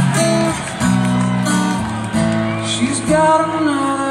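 Live acoustic guitar strumming the opening chords of a song through a concert PA, heard from within a large outdoor crowd.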